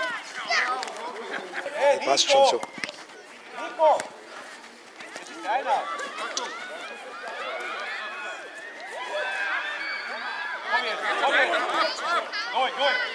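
Voices of players and sideline spectators at a children's football game, overlapping shouts and chatter, many of them high-pitched, with a few short knocks about two to four seconds in.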